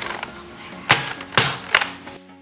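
Three sharp plastic clicks about half a second apart, starting about a second in: the safety lever of a Buzz Bee Air Warriors Bug Hunter salt blaster being worked.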